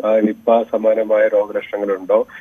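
Speech only: a man talking over a telephone line, the voice thin and narrow.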